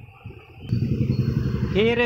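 A steady low engine rumble from a motor vehicle, starting abruptly under a second in and running on under a man's voice near the end.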